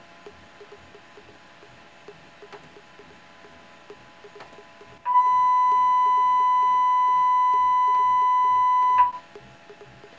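A steady test tone from a computer tone generator, played through the amplifier and the speaker under the Chladni plate, lasting about four seconds. It starts about five seconds in and cuts off suddenly.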